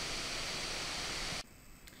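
Steady hiss of background noise from the recording, which cuts off suddenly about one and a half seconds in, leaving near silence.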